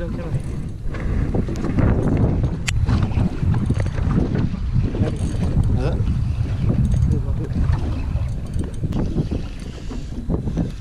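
Steady low rumble of wind buffeting the microphone aboard a small open boat, with water against the hull and faint muffled voices; one sharp click about three seconds in.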